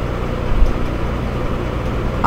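Steady low rumbling background noise with a hiss, with no clear single event.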